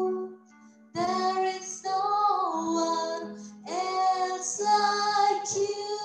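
A woman singing solo into a microphone in long held phrases over a soft sustained instrumental backing, with a short break in her voice about half a second in.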